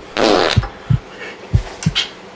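A raspy fart noise about a quarter second in, followed by several short low thumps.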